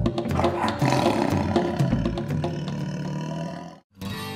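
Drum-beat soundtrack music with a long roar sound effect laid over it, the roar swelling early and dying away, then everything fading to a brief silence just before the end.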